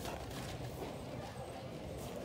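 Cardboard boxes of spaghetti being picked up and handled, with light knocks, over a steady low hum of the store.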